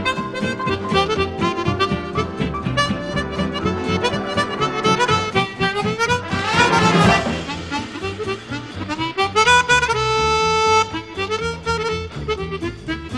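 Chromatic harmonica playing a jazz tune over a band accompaniment. About ten seconds in it holds one long note.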